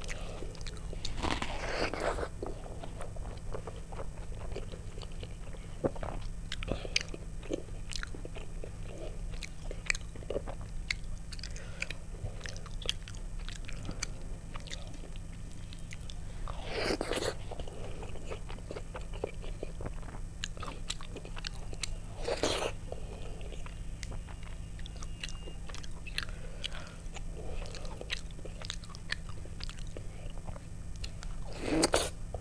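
Close-miked chewing and wet mouth sounds of soft vegetable khichuri eaten by hand, with many small lip smacks and clicks and a few louder mouthfuls about 2, 17 and 22 seconds in. Fingers pick the last grains off the plate.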